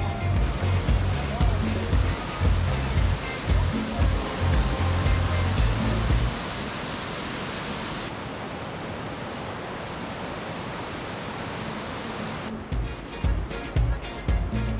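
Steady rush of falling water from a mountain waterfall and its cascading stream. Background music with a bass line plays over it for the first six seconds and comes back near the end.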